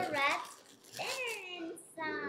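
A young child's wordless vocal sounds: two short high-pitched calls, the second sliding down in pitch.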